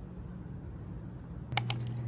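A quick cluster of several sharp clicks about one and a half seconds in, over a low steady hum.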